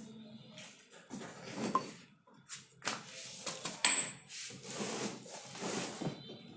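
Cardboard box and plastic packaging being handled and rummaged through: irregular rustling and scraping, with a sharp click about four seconds in.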